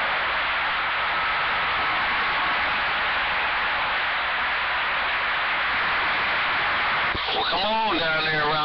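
Cobra 2000 CB base station radio receiving steady hiss and static on an open channel with no station on it. About seven seconds in, the static cuts off as a strong station keys up and a man's voice comes through the speaker.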